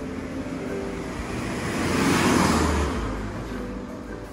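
A passing road vehicle: a rushing noise that builds to its loudest a little past halfway and then fades away, over faint background music.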